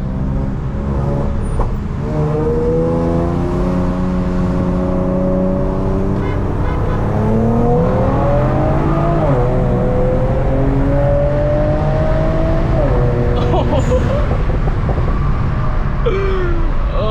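Infiniti Q50's full-bolt-on, E85-tuned twin-turbo 3.0-litre V6 (VR30DDTT) accelerating hard in a roll race from 40 mph, heard from inside the cabin. The engine's pitch climbs steadily, then faster from about seven seconds in, and drops at two upshifts about nine and thirteen seconds in.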